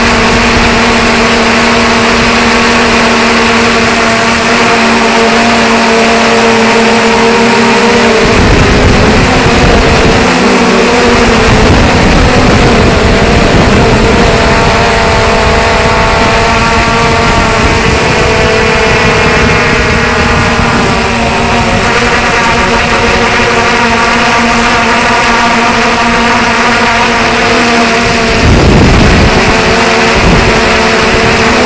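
3DR Solo quadcopter's four electric motors and propellers whining steadily, heard from a camera mounted right beneath them, over a rush of air. The pitch wavers and shifts midway as the drone manoeuvres, and a louder rush comes near the end.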